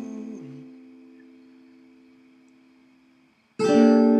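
Acoustic guitar chord left ringing and slowly dying away over about three seconds, then a new strum comes in sharply just before the end.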